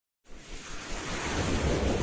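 A rushing whoosh sound effect that starts a quarter second in and swells steadily louder, like wind or surf.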